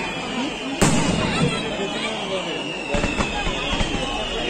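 Aerial firework shells bursting: one sharp bang about a second in, then several smaller pops near the end.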